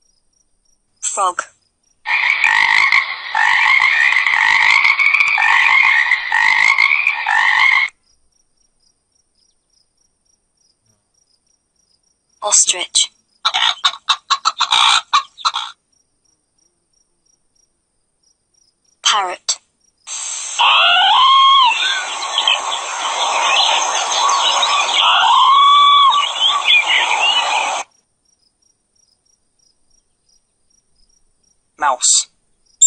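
Recorded animal calls in three separate stretches with near silence between them. The first lasts about six seconds and the last about seven seconds.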